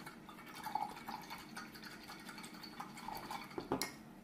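A paintbrush being rinsed of white paint in a pot of water: irregular swishing and light clinks against the pot, with a sharper knock near the end.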